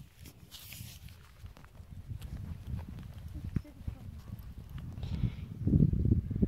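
Footsteps on dry, cracked mud: a scattered string of small clicks and scuffs over a low rumble.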